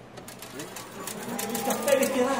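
Rapid clicking, with voices coming in about a second in; the whole grows steadily louder.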